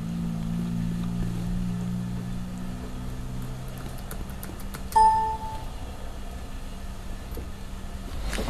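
Small clicks from a laptop keyboard and touchpad, then a short electronic beep about five seconds in, under a low steady hum that fades out over the first few seconds.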